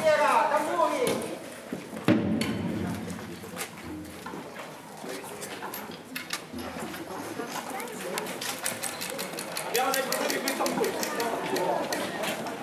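Indistinct voices of people talking, with a sharp knock about two seconds in and a fast run of ticks later on.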